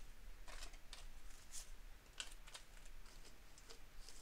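Paper banknotes being handled and flicked through by hand: faint, irregular crisp rustles and snaps of the bills.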